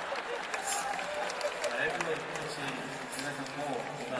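A man's voice speaking, with no other clear sound besides it.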